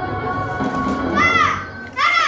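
Backing music with steady held notes fades out, and about a second in a child gives a high-pitched shout with a rising-then-falling pitch.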